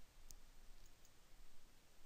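Near silence: room tone, with a faint click about a third of a second in.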